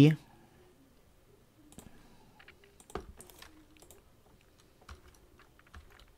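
A few scattered clicks of a computer mouse and keyboard, with quiet between them; the loudest comes about three seconds in.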